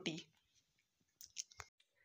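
A spoken word ends right at the start, then near silence with three or four faint short clicks about a second in.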